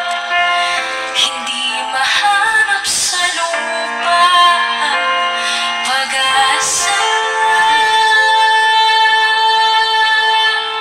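A female vocalist sings a pop ballad over a backing track, holding long notes in the second half.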